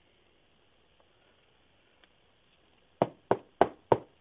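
Four sharp taps near the end, about three a second: a trading card in a rigid plastic top loader tapped against the tabletop.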